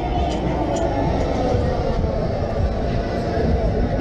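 Wind rushing and buffeting over a ride-mounted action camera's microphone as a large swinging fairground thrill ride sweeps the riders up through the air, a steady heavy rumble, with fairground music faintly beneath.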